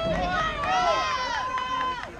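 Several high-pitched girls' voices calling out and cheering over one another, with one drawn-out call through the second half.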